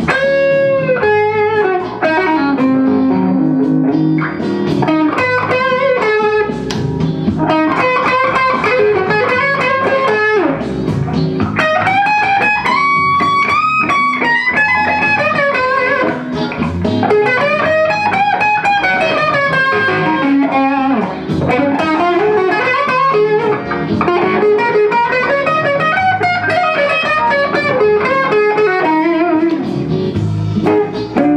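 Harley Benton HB35 Plus semi-hollow electric guitar played through a Bugera V22 valve combo amp: a blues-style single-note solo with string bends, wavering vibrato on held notes and quicker runs in between.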